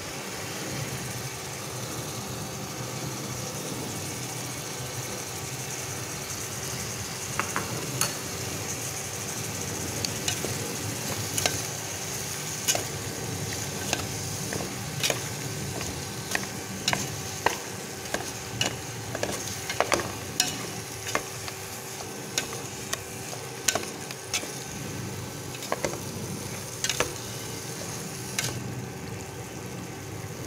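Pork pieces frying in oil in a metal pot, just coated with a fish-sauce and caramel seasoning, under a steady sizzle. From several seconds in, a wooden utensil stirs the meat, knocking and scraping against the pot many times at irregular intervals.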